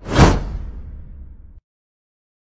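Whoosh-and-boom transition sound effect: a loud swish a moment in, with a low boom that falls in pitch, fading out over about a second and a half.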